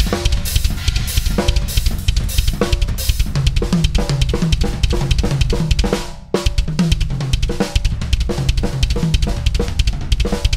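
Drum kit playing a fast metal beat: rapid bass drum kicks under hand strokes spread across cymbals, snare and toms. There is a short break about six seconds in, then the beat picks up again.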